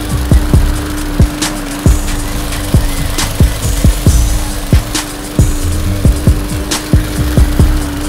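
Gas walk-behind lawn mower running steadily, with a beat of deep, quickly falling kick drums and sharp clicks over it.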